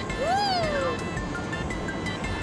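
Light background music with one short meow-like call about a quarter second in that rises and then falls in pitch.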